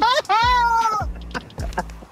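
A high-pitched, drawn-out vocal cry that rises and is then held for nearly a second, followed by quieter voices.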